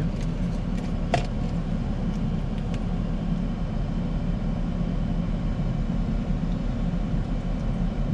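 Steady low rumble inside a Toyota Prius cabin as the car creeps forward at very low speed, with a single sharp click about a second in.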